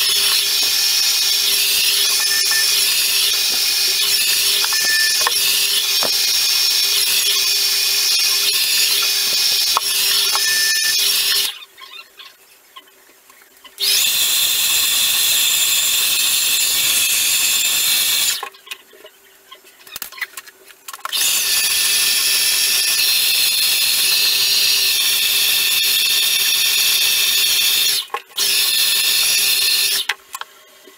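Handheld hair dryer blowing, its motor whining steadily. It cuts out three times: for about two seconds about a third of the way in, again for about three seconds past the middle, and for a moment near the end.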